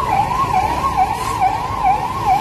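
Ambulance siren sounding a fast yelp, its pitch sweeping up and down about twice a second, over low street noise.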